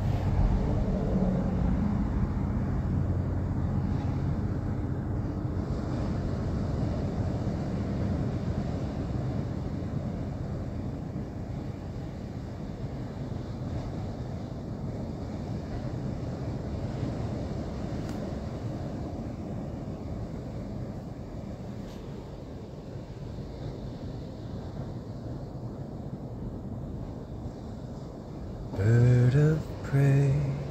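A steady low rumble with a faint hum in the first few seconds, slowly growing quieter.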